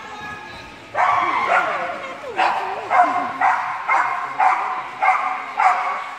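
A dog barking over and over, about two barks a second, starting about a second in.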